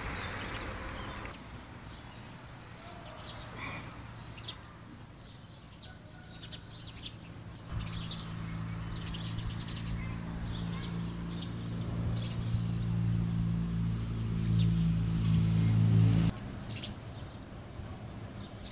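Small birds chirping in short high calls throughout. About eight seconds in, a low steady motor hum comes in, grows louder, and cuts off suddenly near the end.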